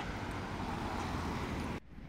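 Steady street traffic noise from cars on a city road, an even rushing hum with no distinct events; it cuts off suddenly near the end.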